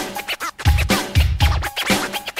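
DJ turntable scratching over a hip hop beat with deep, regularly repeating bass kicks: the scratch break of a rap song.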